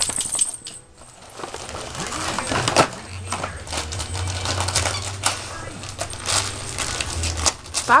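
Christmas wrapping paper crinkling and rustling as a beagle noses through a torn-open present: a running series of short, sharp crackles.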